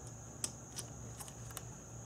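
A few faint, light metallic clicks as the loosened T30 bolt holding the camshaft position sensor is unscrewed by hand and lifted out, the clearest about half a second in.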